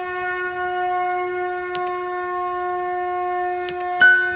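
A conch shell (shankh) blown in one long, steady note, held without a break.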